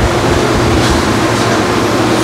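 A steady machine hum with a low held drone, and two faint brief scuffs about a second in and again half a second later.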